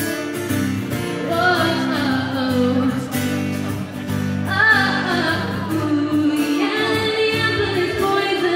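A woman singing live, accompanying herself on acoustic guitar.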